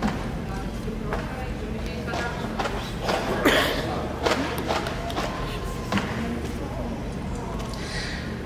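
Indistinct voices in a large hall over a steady low hum, with a few brief knocks or handling sounds.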